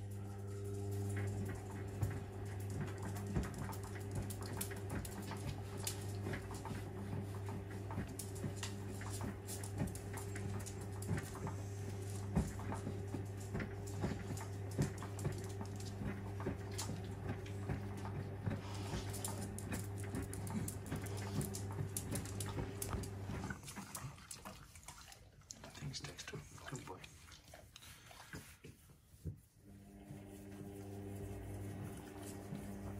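AEG Öko Lavamat Sensorlogic 6955 front-loading washing machine on slow wash tumbles: wet laundry and water slosh and patter in the turning drum over a steady mechanical hum from the machine. The hum cuts off about three quarters of the way through, leaving the softer sloshing.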